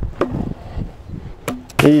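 A small hatchet chopping into a dead log: a couple of sharp strikes into the wood, one just after the start and one about a second and a half in.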